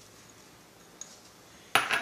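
A single sharp clink with a brief high ring near the end, as a small glass prep bowl knocks against the earthenware mortar, after a faint tick about a second in.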